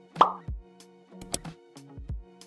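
Light outro background music with sustained chords and a regular bass beat. A sudden, short, loud sound effect lands about a quarter of a second in.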